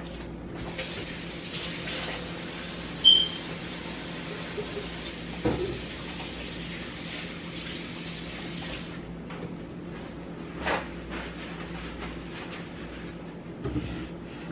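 Kitchen tap running as hands are washed, a steady rush of water for about eight seconds before it is turned off. A short sharp squeak about three seconds in is the loudest moment, and a couple of light knocks come after the water stops.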